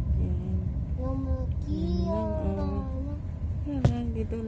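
A young child singing in a moving car, the pitch sliding and sometimes held, over the low rumble of the car on the road. A single sharp click sounds near the end.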